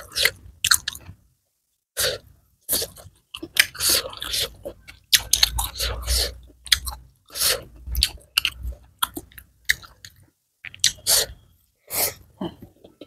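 Chewing mouthfuls of fried rice eaten by hand: a run of short, sharp mouth sounds, broken by pauses of about a second near the start and again near the end.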